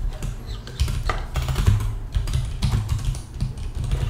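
Typing on a computer keyboard: a quick run of unevenly spaced keystrokes.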